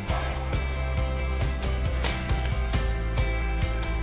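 Winner Spirit Miracle 201 golf swing trainer giving two light clicks about half a second apart, a couple of seconds into a swing, over background music. The click sounds when the swing speed passes the speed set on the trainer's dial.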